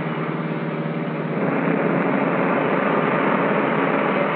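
Motor coach engine droning steadily under road noise, with a second drone of slightly different pitch joining about a second and a half in.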